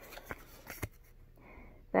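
Faint handling sounds, a few light ticks and soft rustles, as hands pick at twine and a small card tag. A brief spoken word comes right at the end.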